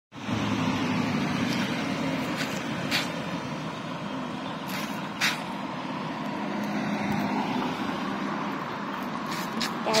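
Steady outdoor background noise with a low hum, and a few short sharp clicks about three and five seconds in.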